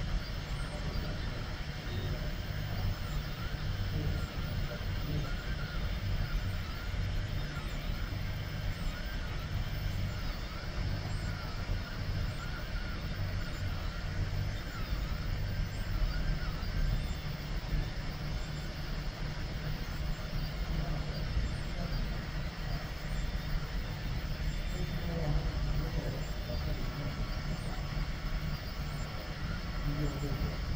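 FDM 3D printer running a print: stepper motors buzzing and whining in short, changing bursts as the head and bed make small moves, over the steady hum of the part-cooling blower fan.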